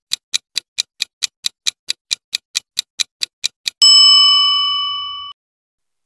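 Countdown-timer sound effect: a clock ticking quickly and evenly, about four to five ticks a second, then a bell ding about four seconds in that rings for over a second and cuts off suddenly, marking the time up.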